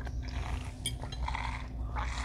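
Soft sipping through a straw from a glass of thick mango lassi, with a single light clink a little under a second in, over a low steady hum.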